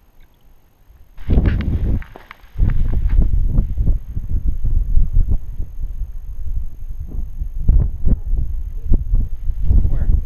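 Wind buffeting a handheld camera's microphone, rumbling in gusts from about a second in with a short lull near two seconds. Footfalls on rocky ground thud through it at a walking pace.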